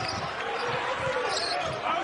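Basketball dribbled on a hardwood court, a series of short irregular bounces, over a steady arena din.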